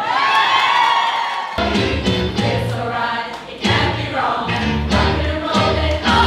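A large mixed choir singing an upbeat pop song with a backing track. For the first second and a half a single voice rises, then a deep bass and beat come in under the full choir.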